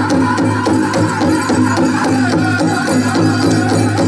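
Powwow drum group accompanying a hoop dance: a big drum struck on a steady beat, with singers chanting over it.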